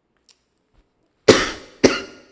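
A man coughs twice into his hand, about half a second apart, each cough sharp at the start and quickly trailing off.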